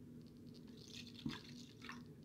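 Energy drink trickling from a small bottle into a plastic cup, faint, with a light tap about halfway through.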